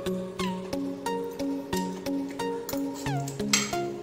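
Background music: a tune of held notes over a steady beat, with a few falling glides near the end.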